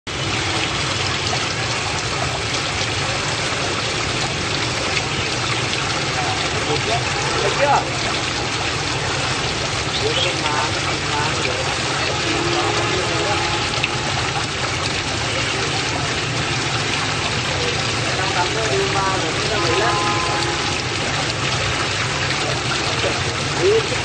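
Garden fountain water pouring from a stone urn onto rocks and into a small pond, a steady splashing.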